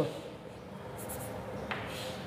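Chalk scratching faintly on a blackboard, with a brief high scrape about a second in and a light tap near the end.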